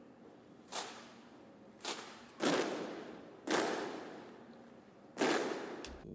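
Norwegian King's Guard drill team striking in unison, boot stomps and rifle slaps with no music, heard as five sharp cracks at uneven intervals, the last three the loudest, each echoing away in a large hall.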